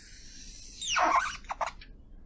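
Writing on a board during a lecture: a scratchy stroke, then about a second in a loud squeak that slides down in pitch, followed by three short squeaky strokes.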